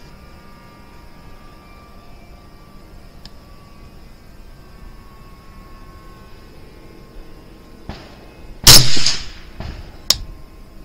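A single rifle shot from a 6mm ARC rifle about nine seconds in, sharp and very loud with a short ringing tail. Before it there is only faint steady background.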